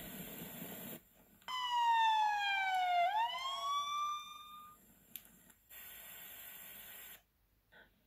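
A siren-like wail from a documentary soundtrack, heard through a tablet's speaker. It follows a hiss and falls in pitch for about a second and a half, then rises again and fades. A fainter hiss comes near the end.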